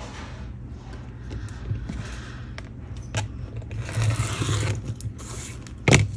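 Rotary cutter scraping as it slices along an acrylic ruler on a cutting mat, with paper handled and shifted, and a sharp knock near the end as something is set down on the mat.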